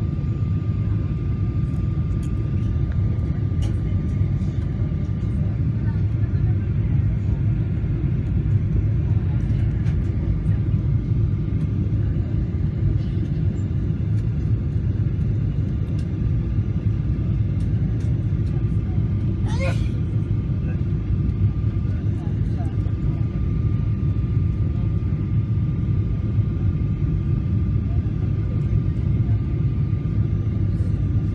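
Airliner cabin noise on a low approach: a steady, loud low rumble of the jet engines and airflow, with a thin steady whine running through it. A brief squeak-like sweep sounds once about two-thirds of the way in.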